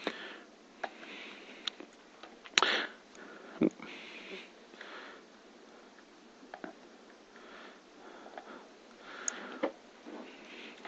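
Scattered clicks and taps of laptop touchpads and keys as hands work two Chromebooks, a few of them louder, with soft breaths through the nose between them.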